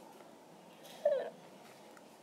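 A faint background hiss, broken about a second in by one short, high vocal sound that falls in pitch.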